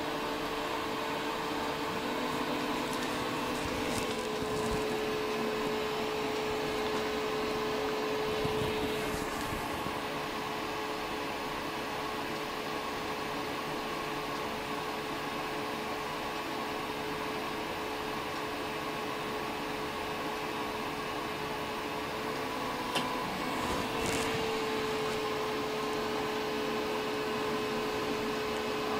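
Steady electric fan whir with a constant hum, from a fume extractor and the Elegoo Mars resin printer's cooling fan running as a print begins. The hum shifts slightly about four seconds in and again near the end, with one small click shortly before.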